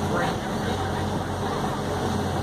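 A boat's engine running steadily with a low hum, with faint voices over it.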